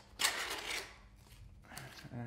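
Cardboard inner tray sliding out of a paperboard box sleeve: a scraping rustle of cardboard rubbing on cardboard lasting about half a second, then a quieter stretch with a faint brief rub near the end.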